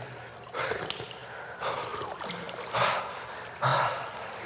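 Two swimmers in a pool splashing and breathing hard, with short gasps and splashes coming in bursts about once a second.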